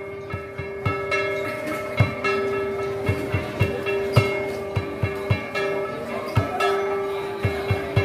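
Dao ceremonial dance music: a hand-held drum beaten in a steady pulse, about two or three strokes a second, under a long held note.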